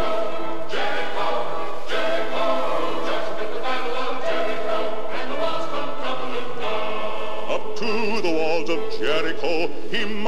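A choir singing a gospel spiritual in sustained chords, the harmony moving on about once a second, with wavering vibrato on the held notes near the end.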